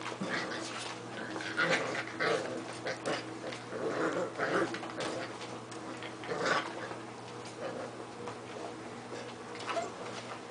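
A litter of six-week-old puppies vocalizing as they play, in short irregular bursts, busiest around two seconds in, between four and five seconds in, and again at about six and a half seconds.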